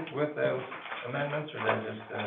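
Speech: a low voice talking, words not clearly made out.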